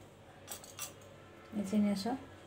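Two light clicks of a small steel spoon against a marble board as it works the edge of a folded karanji, about half a second in and just after. A woman's voice starts near the end.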